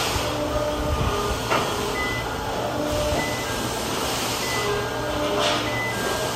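Forklift running as it drives up to the truck and positions its load, with steady machine noise and a couple of clanks about one and a half seconds in and near the end.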